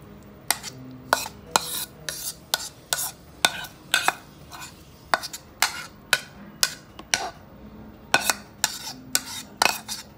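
Metal spoon scraping and knocking against a bowl and a plastic Tupperware container as thick chicken-and-mayonnaise spread is scraped out, in a run of short, sharp, irregular strokes about twice a second.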